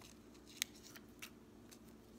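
Faint handling noise from hands working with adhesive patches and their plastic backing: a few light crackles and clicks, the clearest about half a second in.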